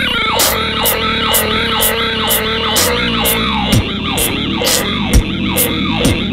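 Solo vocal beatbox: crisp hi-hat-like clicks about twice a second over a pitched, warbling tone that sweeps downward again and again in time with them.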